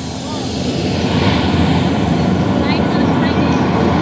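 Large concert crowd cheering and shouting, swelling about a second in and staying loud.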